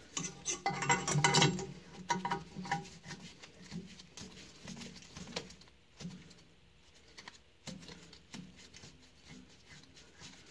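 Steel tooling clinking and tapping against a cast-iron small-block Chevy cylinder head as a pilot rod is worked into a valve guide. A dense run of clinks comes in the first two seconds, then lighter scattered taps.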